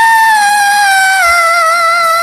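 Isolated female lead vocal, a cappella, holding one long high note in head voice, the pitch easing slightly lower about halfway through.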